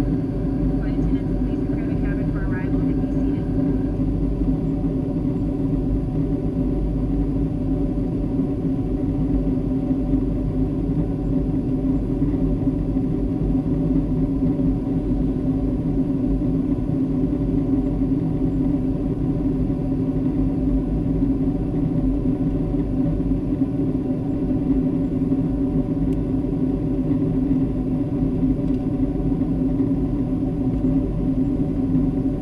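Steady cabin noise of a Boeing 757 in flight: a low, even rumble of engines and rushing air with a few constant tones, unchanging throughout.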